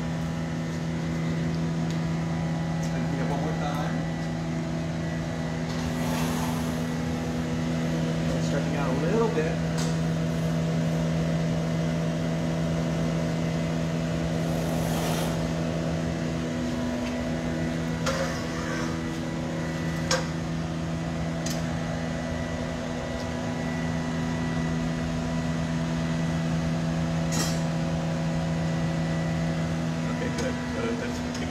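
Glassblowing studio equipment: the furnace and glory-hole burner blowers hum as a steady low drone of several constant tones, with a couple of faint clinks of tools.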